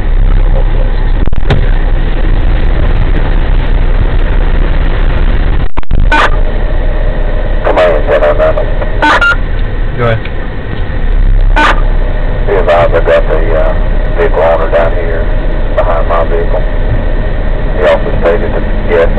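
Steady low rumble of idling fire apparatus engines, heard from inside a parked vehicle, with indistinct voices breaking in now and then from about eight seconds on.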